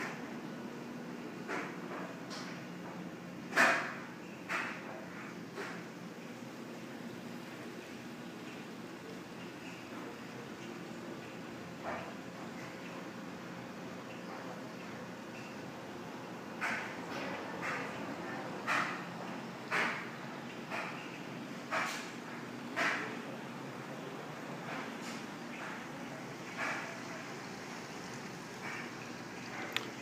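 Steady low room hum with scattered short knocks. A louder knock comes a few seconds in, and later a regular run of about one step a second, footsteps on a tiled floor as someone walks through the rooms.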